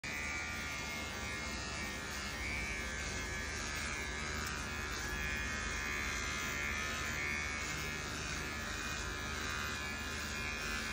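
Cordless electric hair clipper buzzing steadily as it shaves the fur off a dog's belly, clipping the skin bare before a spay operation. The buzz shifts slightly as the blade moves through the coat.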